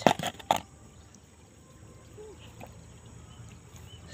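Caught snakehead fish flapping in a shallow white plastic basin with a little water: a few sharp slaps and splashes in the first half second, then a quiet background.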